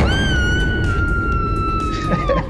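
A single high, held whistle-like tone that starts suddenly, sags slowly in pitch and then drops away, laid over background music as an edited-in sound effect.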